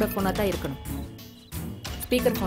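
A woman speaking over a background music score; her speech trails off about a second in, leaving the music.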